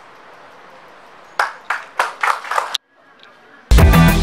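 A few scattered hand claps, about six, ringing in a large hall, followed near the end by loud music that starts abruptly.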